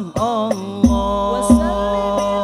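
Al-banjari sholawat: male voices singing a melismatic religious chant in unison, accompanied by hand-struck frame drums (terbang) with deep booming strokes. The singing breaks off briefly and then comes back in.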